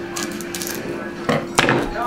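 Trading cards being handled at a desk: a few light clicks and rustles, then a sharp knock about a second and a half in, over a faint steady hum.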